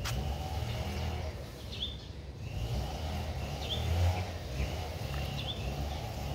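Outdoor background noise: a low rumble with three short, high chirps spread through it.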